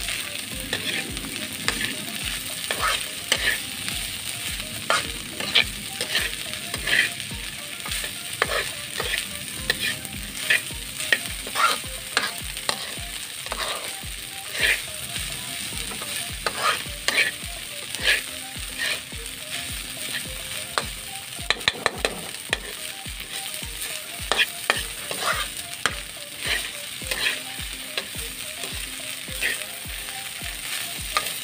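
White corn kernels and onion sautéing in a hot pan, sizzling steadily, with frequent sharp clicks and scrapes of metal tongs stirring and turning them against the pan.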